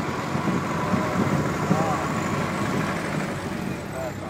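Model T Ford running along a street, heard from inside the open car: a steady engine and road rumble.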